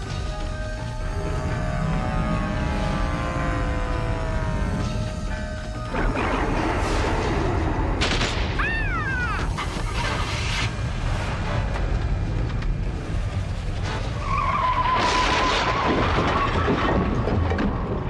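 Dramatic film-score music with held, gliding tones. About six seconds in, a sudden loud rush of rumbling, crashing sound effects joins the music and carries on to the end.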